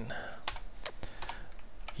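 Computer keyboard typing: a few separate keystrokes, unevenly spaced.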